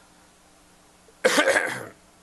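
A man coughing once, a short rough burst about a second in.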